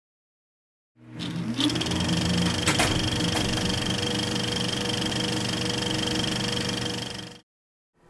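Logo sound effect: a steady, machine-like whirring with several held tones, a rising whine about half a second after it starts and a few sharp clicks early on, cutting off suddenly shortly before the end.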